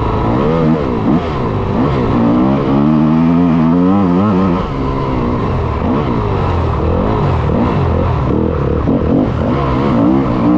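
Yamaha YZ250FX's single-cylinder four-stroke engine revving hard under racing load. Its pitch climbs and drops again and again as the throttle is worked and the gears change. The sound is picked up close by a camera mounted on the bike's front fender.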